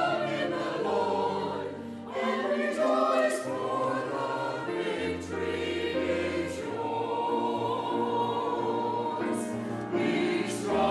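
Church choir singing in long held chords that change every second or so.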